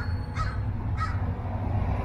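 Crows cawing: three short caws, at the start, about half a second in and about a second in, over a steady low rumble.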